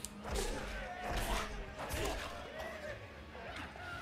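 Anime fight-scene soundtrack playing back: voices over background music, with a few sharp hits or knocks.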